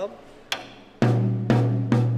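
A child hitting a tom-tom on a drum kit with a drumstick: a light tap about half a second in, then three hard strikes about half a second apart, the drum ringing low between them.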